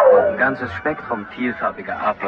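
A spoken voice sample in a break of a progressive psytrance mix, with the beat dropped out and little music under it.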